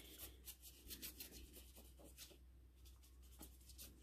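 Faint light strokes of a water brush pen on wet cardstock: a run of soft ticks and rubs, densest in the first two seconds and thinning out after, over near silence.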